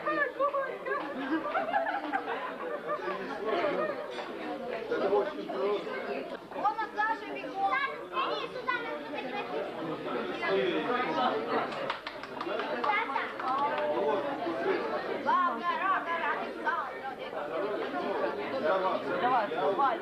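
Many people talking over one another at once: the steady chatter of a crowded festive table, with no single voice standing out.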